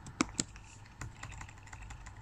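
A few light clicks of computer keys being pressed: two sharp ones in the first half second, another about a second in, then fainter scattered ticks, over a faint low hum.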